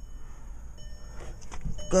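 A pause with a faint low background rumble and a few soft clicks of handling noise while the camera moves. A man's voice starts right at the end.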